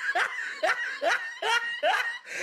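A person laughing in a quick run of short, high-pitched bursts, each falling in pitch, about three a second.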